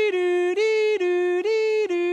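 A man imitating a police siren with his voice: a two-tone wail switching between a higher and a lower note about twice a second. Each note is held at an even pitch, standing for a siren that is not moving.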